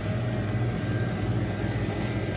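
A steady low hum with a rumbling noise under it and a few faint steady tones above, holding an even level throughout.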